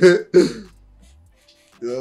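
A man laughing: two short, sharp bursts of laughter about half a second apart, then a brief lull before he starts talking near the end.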